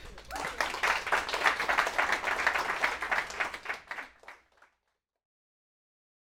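A small audience applauding for about four seconds, thinning out, then the sound cuts off.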